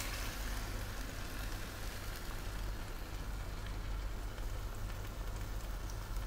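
Pig trotters in a soy-sauce braising liquid sizzling and bubbling in a pan over a gas burner: a steady, even crackle with a low hum underneath.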